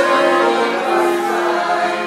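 Piano accordion playing a slow melody in held notes, with a man's singing voice over it.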